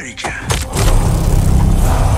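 A cinematic trailer sound-design hit: a sudden whoosh about half a second in opens into a loud, deep, sustained rumble.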